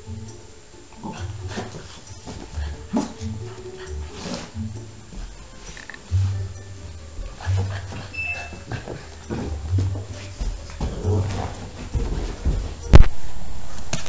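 A chocolate Labrador puppy playing on a carpet, with scuffling, knocks and occasional small puppy whimpers. A sharp click comes about a second before the end.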